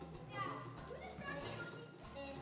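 Children's voices from a stage cast, several at once, with music faintly underneath.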